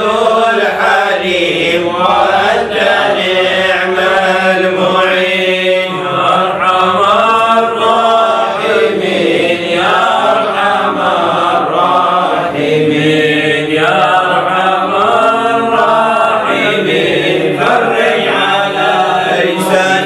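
A man chanting an Arabic devotional poem (qasida), a supplication to God, in a slow, flowing, melismatic melody that carries on without pause.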